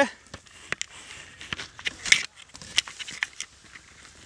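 Handling noise from a handheld camera being swung about: scattered light clicks, knocks and rustles, the sharpest knock about two seconds in.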